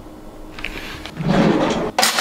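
Handling noise on a kitchen counter: a loud sliding rub for a little under a second about halfway through, then a sharp knock at the end.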